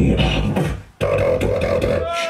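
Live beatboxing into a handheld microphone: vocal drum and bass sounds that cut out just before a second in, then come back sharply with a steady held tone under the beat.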